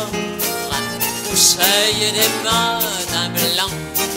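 Live band music from a French chanson: an instrumental passage between sung verses, with a melody line that slides between notes over steady accompaniment.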